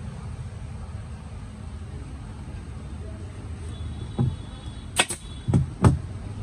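Handling of a motorcycle seat: a leatherette cover being worked over the hard plastic seat base, with a few sharp knocks and thumps near the end as the seat is moved on the wooden worktable. A steady low rumble runs underneath.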